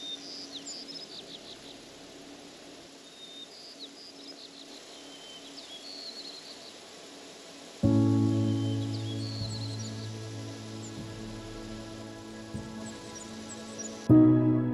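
Small birds singing, with short high chirps and trills repeating every second or two. About eight seconds in, soft music starts suddenly with a long held chord, and the birdsong goes on faintly beneath it.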